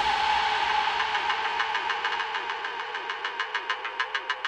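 Outro of a dark electronic track: the bass and beat have dropped out, leaving a held droning synth tone and a noisy drone that slowly fade, with faint rapid ticking coming through toward the end.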